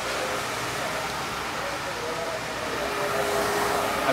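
Recirculation booster pump running steadily, with water moving through the piping. A faint steady hum comes in about three quarters of the way through.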